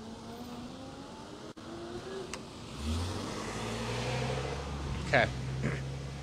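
A car driving past on the street: engine hum and tyre noise, growing louder about three seconds in and settling into a steady low hum.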